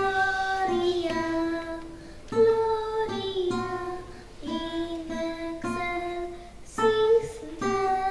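A young girl singing a Polish Christmas carol in slow, held notes, accompanying herself on a plucked acoustic guitar.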